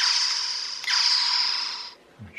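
Toy infrared gun's electronic shooting sound played through its small bare speaker with the casing open: two static-like zaps, each starting sharply and fading out over about a second, the second following just under a second after the first.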